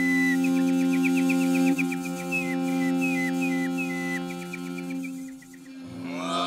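Mongolian overtone singing (khöömei): a steady low vocal drone with a whistling melody of quick flicked and short held notes high above it, dipping briefly near the end.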